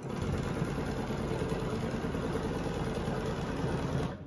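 Domestic sewing machine running steadily at high speed, its needle stitching free-motion quilting along an acrylic ruler template.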